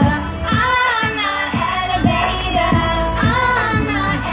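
Pop song sung live by a female singer over a backing beat, with a deep kick drum that drops in pitch about twice a second, heard through the stage loudspeakers.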